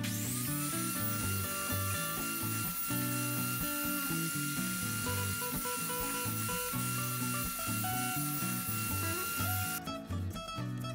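Background music with a steady beat over a power saw's motor running: its whine rises briefly as it starts, then holds steady with a hiss until it cuts off just before the end.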